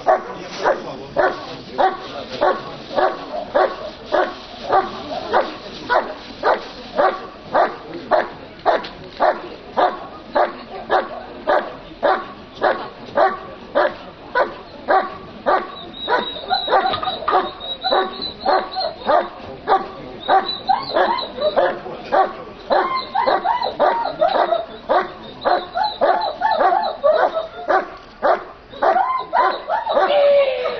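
A working dog barking steadily and rhythmically, about two barks a second, as it holds a bite-suited helper at the blind in a protection-sport 'hold and bark'.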